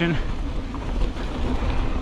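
Wind rushing over the camera microphone while a mountain bike rolls along a sandy dirt singletrack, the tyres running on loose dirt in a steady rushing noise.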